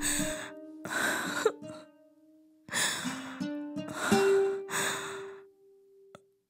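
A woman crying in heavy, breathy sighs and gasps, about five of them, over soft background music of long held notes.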